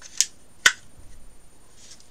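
Two sharp plastic clicks about half a second apart, the second louder, as a battery is fitted into a Logitech M325 wireless mouse.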